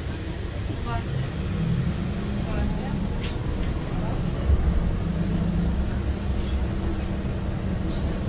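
Steady low rumble of a city bus driving along the street, heard from inside the passenger cabin.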